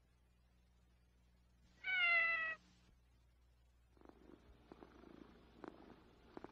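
A kitten's single meow about two seconds in, lasting under a second and dropping slightly in pitch. Faint scattered clicks and crackle follow in the last two seconds.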